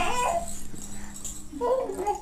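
Short high-pitched vocal sounds with a wavering pitch: one trails off just after the start, and another comes near the end, over a faint steady hum.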